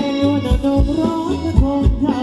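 Live Thai ram wong dance band music with a steady kick-drum beat, a bass line and a melody that glides between notes.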